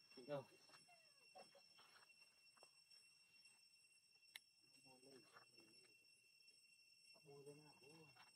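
Near silence, broken by a few faint, brief voices: short sounds near the start, in the middle and near the end, with one faint click a little past halfway.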